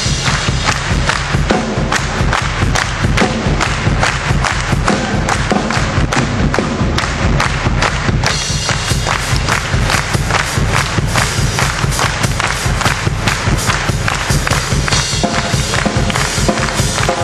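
Live rock and roll band playing, amplified through a PA, driven by a loud, steady drum beat.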